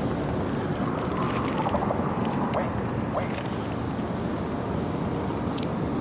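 Steady street noise of city traffic, an even rush with no single vehicle standing out.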